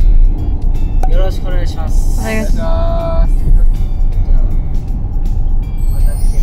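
Steady low rumble of road and engine noise inside a moving car's cabin, with brief voices over it about a second in and again near the middle.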